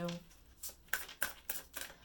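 A deck of tarot cards being shuffled by hand: a quick run of about six sharp card snaps over a second and a half.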